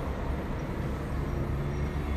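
Steady low hum of room background noise during a pause in speech.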